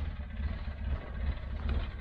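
A low, uneven rumble of wind on the microphone, with no other clear event.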